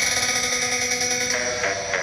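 Dell XPS 13 9340 laptop's built-in 8-watt speakers playing an electronic dance track very loudly: held synth chords that shift to new notes about a second and a half in.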